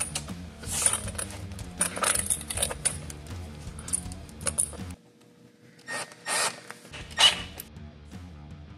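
Background music over handling noise: short metallic scrapes and clinks of a stainless steel worm-drive hose clamp being slipped over a clear reinforced tube and fitted onto a plastic drain fitting. The music drops out for about two seconds around five seconds in, leaving the clinks on their own.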